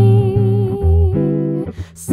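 Jazz singer holding one long sung note with a slight vibrato over chords on an archtop jazz guitar; the note ends shortly before the guitar's next chord.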